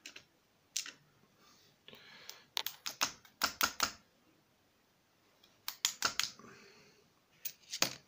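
Tweezers working loose pins and springs out of a brass pin-tumbler lock plug during disassembly. It gives light, sharp metal clicks in a few quick runs separated by short pauses.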